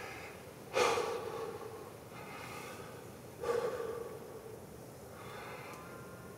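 A man breathing heavily, two loud breaths: one just under a second in, another about three and a half seconds in, each fading out over about a second.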